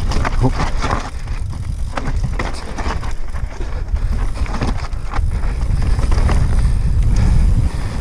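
Wind buffeting an action camera's microphone as a mountain bike descends a rocky singletrack at speed, with tyres rolling over stones and the bike rattling in many short knocks over the bumps.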